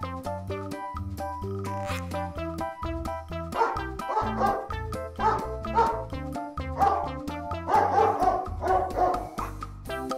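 A toy robot puppy's recorded dog barks, a run of short barks from about three and a half seconds in, over children's background music with a steady bass line.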